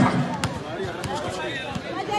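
A basketball being dribbled on an outdoor court, bouncing repeatedly, with people talking in the background.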